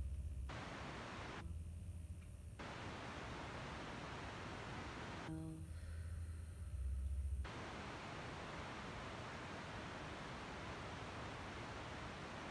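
Wind noise on an outdoor microphone: a steady, even hiss, twice giving way to a low rumble, loudest about seven seconds in.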